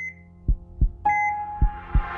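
Logo-animation sound design: a synthetic heartbeat thumping in pairs, about one beat pair a second, with short electronic heart-monitor beeps over a low steady drone.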